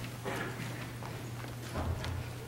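Scattered footsteps and light knocks on a wooden floor, over a steady low electrical hum.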